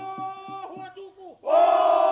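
A group of men singing a Bellona (Mungiki) Polynesian dance song. Their voices trail off in falling slides, then about one and a half seconds in they break into a loud, held group cry that glides down in pitch.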